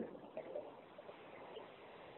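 Faint steady hiss of a telephone conference line, with a couple of faint short blips about half a second in.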